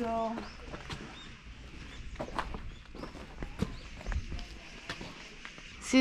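Footsteps on a paved road: a few irregular steps with sharp little clicks, under faint high chirps.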